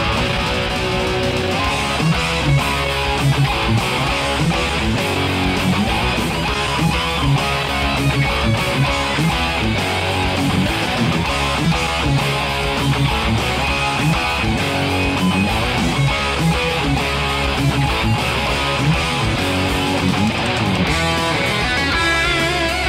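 Distorted electric guitar playing a fast heavy metal riff over a band backing track with drums. Near the end a higher lead line with wavering vibrato comes in.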